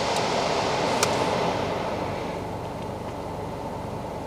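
Steady road and engine noise heard inside a moving car's cabin, easing off a little in the second half, with one small click about a second in.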